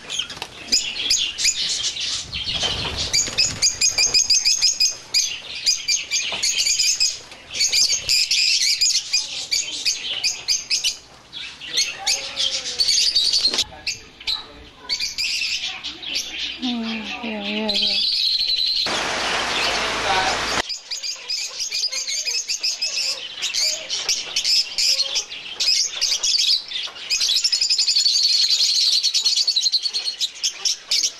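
Flock of rosy-faced lovebirds chattering, a dense high twittering. About two-thirds of the way through it breaks for a couple of seconds of loud rushing noise, then the chatter resumes.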